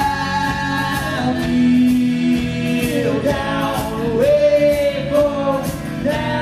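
A folk-rock band playing live: long held sung notes over acoustic guitar, viola, electric bass and drum kit.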